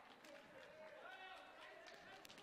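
Near silence: faint, distant voices in a gymnasium hall between rallies.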